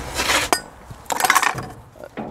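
Handling noise of small objects on a wooden chair seat: two short bursts of rustling with light clinks, one at the start and one about a second in.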